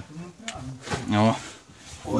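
A man's voice in short, wordless vocal sounds, heard twice, over faint scraping and rustling of a caver's body and clothing in a tight rock passage.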